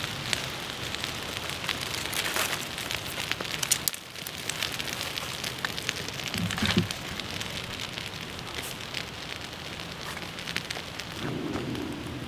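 Small wood fire of twigs crackling, with many sharp pops over a steady hiss, burning in and around a metal tin.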